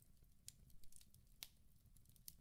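Near silence: room tone, with a few faint short clicks.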